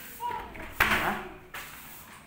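A voice with a sudden loud knock a little under a second in, the loudest moment, fading over about half a second.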